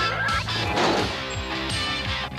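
Cartoon sound effect over orchestral trailer music: a quick rising glide followed by a crash, loudest about a second in.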